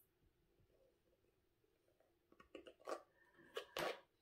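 Near silence: room tone, with a few faint short clicks in the last second and a half.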